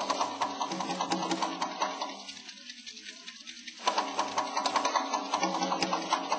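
Improvised percussion played as a fast, even flurry of strokes with a ringing pitch in it. The flurry thins out about two seconds in and picks back up near four seconds.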